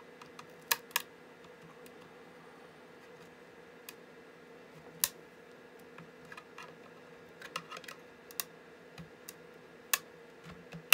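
Flat-head screwdriver tips prying at the seam of a plastic laptop battery case, giving irregular sharp clicks and small snaps of plastic: two about a second in, one about five seconds in and a quick run of them near the end.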